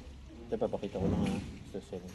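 Quiet, indistinct speech that starts about half a second in and trails off, over a low steady room hum.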